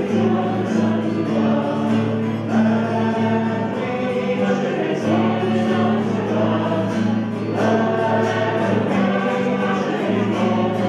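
A roomful of people singing a worship song together in unison, with acoustic guitar accompaniment, in steady sustained phrases.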